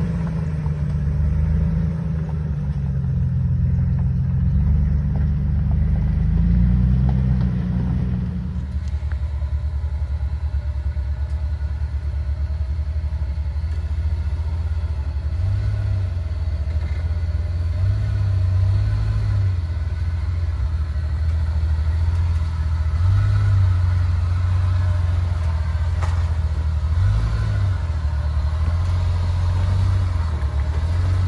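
Lifted Jeep Wrangler TJ engine running at low revs as it crawls over rocks and ruts, the pitch wandering up and down as the throttle is worked. After a shift about 8 seconds in, it runs steadier and lower, with several short rises in revs.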